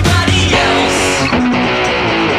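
Rock music with an electric guitar strummed along to a band backing track, loud and steady.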